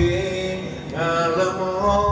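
A man singing long, held notes through a microphone and PA over live accompaniment, the melody stepping up in pitch about a second in.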